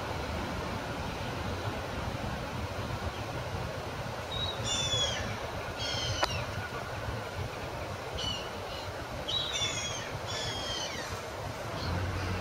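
Birds giving short, high chirps that fall in pitch, in several clusters from about four seconds in, over a steady low rumble of distant background noise. There is a single sharp click about halfway through.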